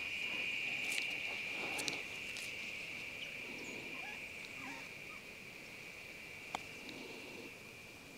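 A steady, high-pitched drone of insects. About six and a half seconds in there is a single sharp click: a wedge striking a golf ball for a putt.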